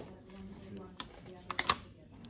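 A few light, sharp plastic clicks: one about a second in, then three in quick succession, over faint background voices.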